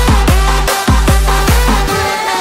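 Electronic dance music with a fast, hard kick drum and heavy bass. Near the end the kick and bass drop out, leaving the higher synth parts.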